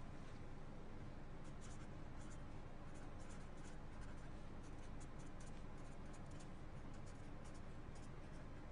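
Marker pen writing on paper: faint, quick, irregular strokes as letters are written out, over a steady low room hum.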